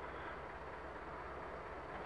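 Faint steady background noise with a low hum, no distinct event: room tone.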